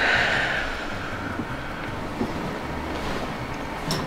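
A soft breathy hiss in the first second, then low steady background noise, during a side-lying chiropractic twist adjustment that gives no joint crack or pop.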